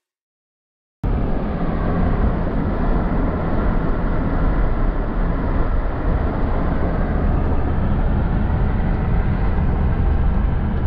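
Silence for about a second, then steady driving noise heard inside the cabin of an Infiniti G37 on the move: a constant low rumble of engine and road noise.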